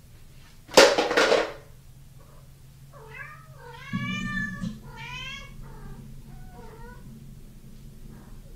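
A sharp clatter about a second in, then a cat meowing several times, the meows drawn out with their pitch rising and falling.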